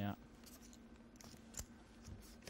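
A few faint, sharp clicks of poker chips being handled and pushed into the pot for a call, the loudest a little past halfway.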